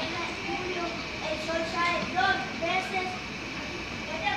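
Children's voices speaking, the words unclear.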